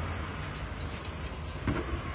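Car engine idling, heard from inside the cabin as a steady low hum with even background noise.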